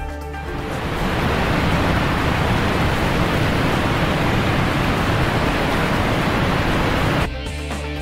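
Steady rush of ocean surf and water noise, swelling in over the first second and cutting off suddenly near the end.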